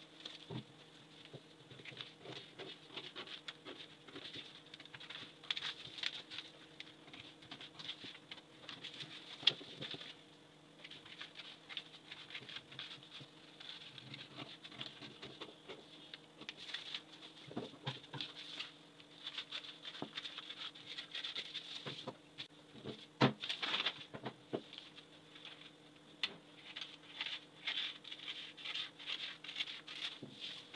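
Scissors snipping through pattern paper in a steady run of small cuts, with the paper rustling as it is moved. A few sharper, louder snips come about two-thirds of the way through.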